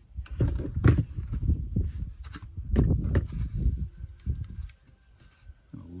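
Handling noise: irregular knocks and rustles as plastic trim and a small switch are moved about and positioned, dying away after about four and a half seconds.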